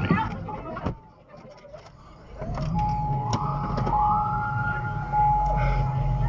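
Fire truck siren sounding from behind, starting a couple of seconds in: a steady tone joined by a wail that rises, holds and then falls, over a low engine rumble.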